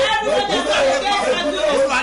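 Several voices praying aloud at the same time, overlapping one another in a reverberant room.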